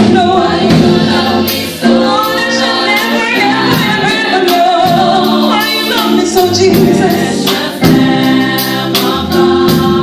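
A women's gospel choir singing together, one voice carried on a microphone, with drum kit strikes running through the song.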